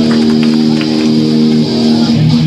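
Hardcore punk band playing live: electric guitars and bass hold one chord that rings on steadily.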